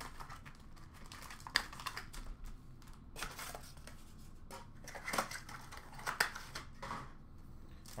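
Plastic wrapping on trading-card boxes and packs being torn open and crinkled, in scattered quiet rustles with a few light clicks from handling.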